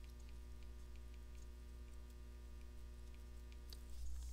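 Steady low electrical hum, with a scatter of faint light ticks from a pen or stylus tapping on a tablet as words are handwritten.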